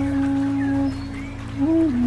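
Calm ambient music: a flute holds one long low note that ends about a second in. After a short lull a new note slides up and dips down near the end, over a steady low drone.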